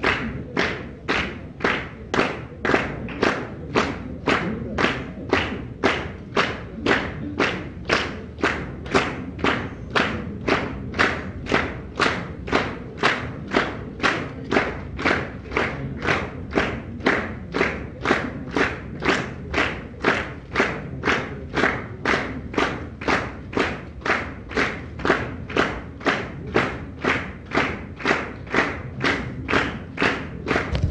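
Concert audience clapping in unison to a steady beat, about two claps a second: the rhythmic clapping that calls the group back for an encore.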